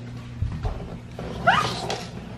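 A toddler's short, high-pitched squeal that rises sharply in pitch about a second and a half in, after a couple of soft thumps.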